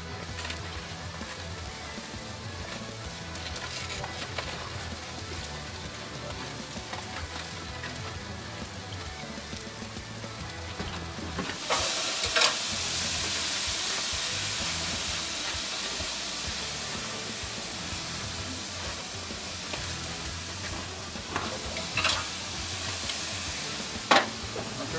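Pork ribs sizzling on the hot grate of a gas grill: the sizzle starts suddenly about halfway through and slowly fades, with a few sharp clicks. Background music plays under the first half.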